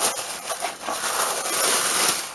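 Tissue wrapping paper rustling and crinkling as it is handled and unfolded, a continuous papery noise that swells a little in the second half.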